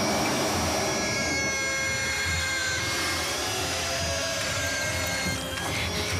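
Film soundtrack music: several high, sustained tones held over a low pulse that comes a little faster than once a second.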